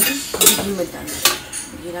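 Metal kitchen utensils clinking against a cooking pan, about four sharp clinks over the two seconds.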